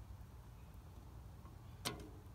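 Quiet room tone with a steady low hum, and a single light click near the end.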